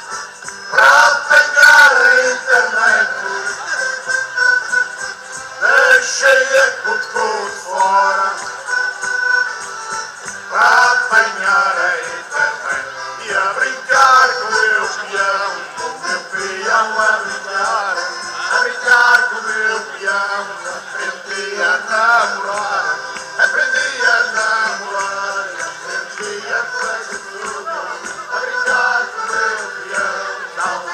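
Live folk music played over a PA by a group of male singers with instrumental backing, the singing running on with louder passages about one, six and eleven seconds in.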